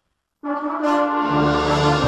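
A student concert band starts playing about half a second in, loud sustained brass and woodwind chords entering together; deep low notes join about a second later.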